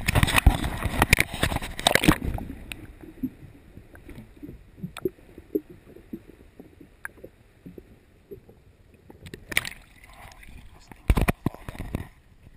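Camera plunged into the sea: loud splashing and water rushing over it for about the first two seconds, then muffled underwater sound with scattered faint pops and ticks, and loud splashing again near the end as it comes back out of the water.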